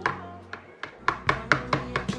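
A metal spoon knocking and scraping against the inside of a stainless steel pot, sharp irregular knocks about four a second, as mashed pumpkin is scraped out into a plastic container. Background music plays underneath.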